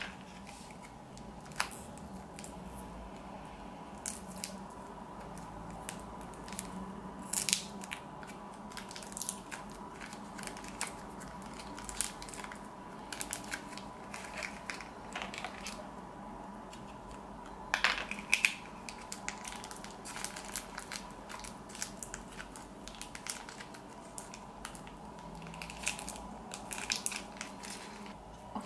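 Foil packet of modelling dough crinkling as soft white dough is pinched out of it and pressed into a thin plastic mould, in irregular crackles and small taps. A faint steady hum runs underneath.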